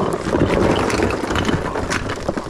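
Loose cashews and debris poured out of a cardboard box into a plastic trash can: a dense rattling rush of many small pieces, with the cardboard scraping, lasting about two seconds.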